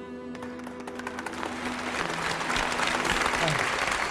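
Theatre audience applause that begins with scattered claps and swells within a couple of seconds into steady, dense clapping, over soft sustained background music.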